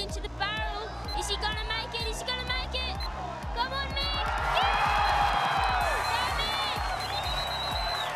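Excited high-pitched voices shouting and cheering over background music with a steady low beat. About halfway through the cheering swells louder, with long, held high yells lasting a few seconds.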